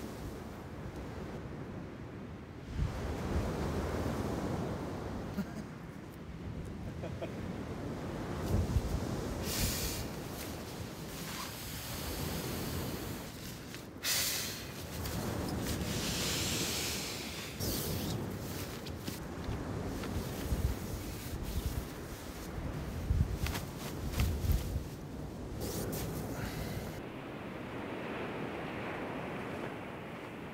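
Wind and surf with rustling and handling of tent fabric and camping gear, broken by several short swishes and bumps.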